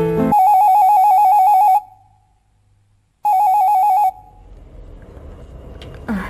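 Electronic telephone ringer trilling with a rapid warble: an incoming call. It rings twice, first for about a second and a half, then after a gap of similar length, a shorter second ring that cuts off.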